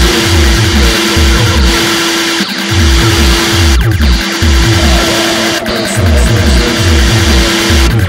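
Retro-synth electronic music: a steady, fast, pounding bass beat under a held synth drone and buzzy repeating synth figures, with no vocals. The beat drops out briefly twice.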